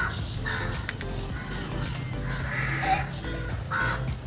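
Crow cawing several times in short calls over a steady background music track.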